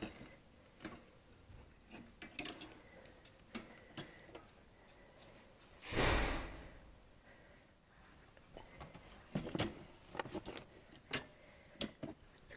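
Handling sounds of a wire cage being carried and loaded into a car boot: scattered light clicks and knocks, with one louder thump and rustle about six seconds in.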